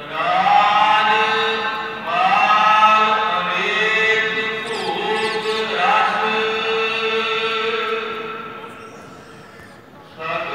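Gurbani kirtan, Sikh devotional singing: a voice sings long held phrases that open with upward slides, over a steady sustained note, and fades out near the end.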